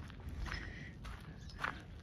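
Faint footsteps on a gravel path, a few soft steps spaced unevenly.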